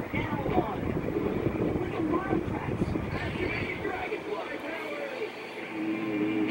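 Voices talking on a television playing in the background, over a low rumble that drops away about four seconds in.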